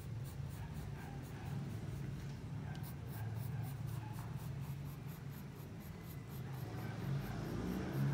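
Graphite pencil scratching on paper while sketching a figure's outline, over a steady low hum.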